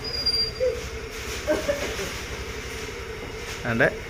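Small motor scooter engine running at low speed as the scooter rolls in and stops, with a brief thin high squeal in the first second.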